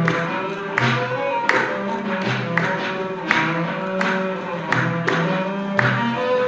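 Live ensemble music: a cello holding long notes over a steady beat of hand claps and hand-drum strokes.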